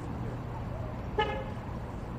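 A single short car horn toot about a second in, over a steady low hum of idling vehicles and street noise.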